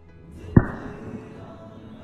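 One sharp crack of a golf club striking a target bird golf ball off a hitting mat, about half a second in, quickly dying away. A song plays underneath.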